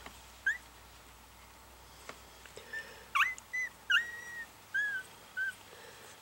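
Very young miniature schnauzer puppy whimpering: a scatter of short, high squeaks, one drawn out a little longer about four seconds in, as it squirms against a sleeping littermate.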